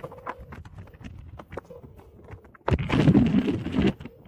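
Riding noise from electric unicycles on a dirt road: irregular clicks and knocks of the ride over the rough surface under a low rush of wind on the microphone, which swells to a loud rushing burst for about a second near the end.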